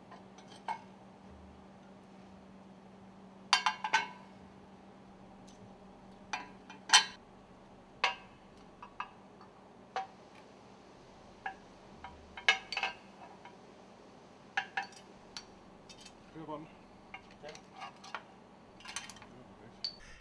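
Metal sealing and scraper ring segments of a piston rod stuffing box clinking as they are taken apart and stacked on the work table: a series of sharp, irregular clinks, each with a short metallic ring.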